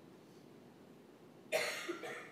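A single cough about one and a half seconds in, sudden and short, against the quiet room tone of a hushed chapel.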